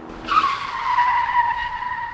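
Car tyres screeching as the car brakes to a halt, a cartoon sound effect. One squeal starts about half a second in, drops slightly in pitch and fades out at the end.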